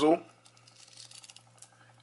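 Titanium uni-directional 60-click dive bezel of a Citizen Ecozilla (BJ8040) being turned by hand, ratcheting in a run of faint, rapid clicks. Titanium on titanium gives a muted sound.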